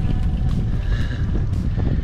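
Wind buffeting the microphone of a camera on a moving bicycle: a steady, loud low rumble.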